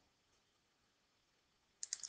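Near silence, then near the end a quick run of three computer mouse clicks as the on-screen page is changed.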